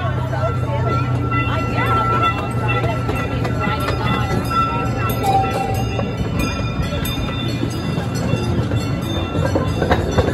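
Amusement-park train running steadily, a constant low hum from the moving train heard from aboard, with people's voices and faint music over it.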